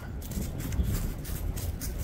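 Wind rumbling on the microphone, with scattered light crunching of steps on snow.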